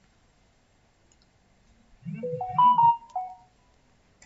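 A short electronic tune of about five stepped tones, rising then falling, lasting about a second and a half and starting about two seconds in, like a phone ringtone or notification chime.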